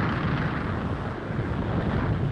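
Steady, rushing roar of a large fire: the hydrogen-filled airship Hindenburg burning.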